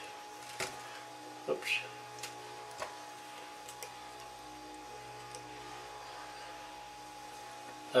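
A few faint, short clicks from steel needle-nose pliers working the lead wires out of a ceiling fan's copper-wound stator, most of them in the first three seconds, over a steady low hum.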